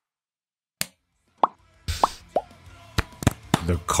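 Three short plopping pops, each falling quickly in pitch, among a few sharp clicks, after a silent first second.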